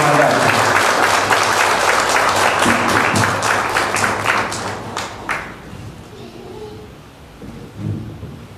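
Audience applauding, the claps thinning to a few last ones and stopping about five seconds in.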